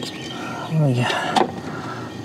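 A brief murmured vocal sound falling in pitch, then a single sharp click, over a steady background hum.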